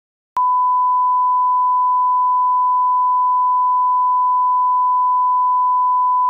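Steady 1 kHz line-up reference tone, one pure unchanging pitch, the audio test tone that goes with colour bars for setting levels. It starts abruptly with a click about half a second in.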